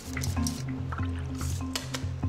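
Background music with a steady bass line, over a wire whisk beating wet batter in a stainless steel bowl: squelching strokes with short taps of the whisk against the bowl.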